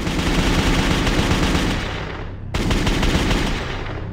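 Rapid automatic gunfire, a long continuous volley in two bursts, the second starting about two and a half seconds in, used as an outro sound effect.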